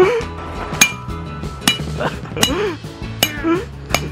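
Old cell phones being struck hard and repeatedly on gravel, about five sharp clinking hits at a steady rate of a little over one a second, each with a brief metallic ring.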